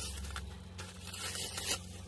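Clear plastic packaging crinkling and rustling as silicone molds are pulled out of it, with a slightly louder crackle near the end.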